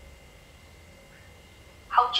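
Quiet room tone with faint steady high tones; a voice starts abruptly just before the end.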